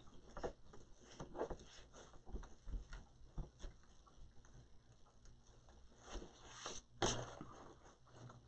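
Faint rustling and light ticking of deco mesh being handled as its end is tucked under and pulled through to the back of the wreath, with a louder stretch of rustling about six seconds in.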